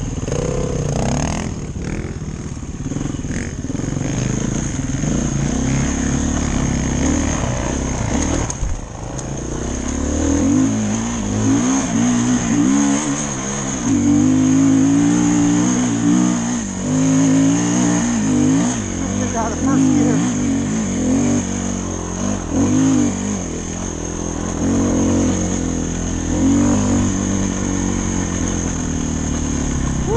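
Dirt bike engine close to the microphone, its revs rising and falling as the throttle opens and closes; from about ten seconds in it works harder and swings more widely under load on a steep hill climb.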